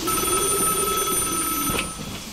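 A telephone ringing as a sound effect at the start of a recorded track: one steady ring that stops just before the end, over a low background hum.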